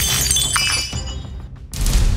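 A glass-shattering sound effect hits at the start, its high ringing fragments fading over about a second, over background music. Near the end a sudden loud rush of noise with a low rumble comes in.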